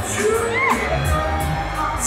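A crowd of guests cheering, shouting and whooping over music.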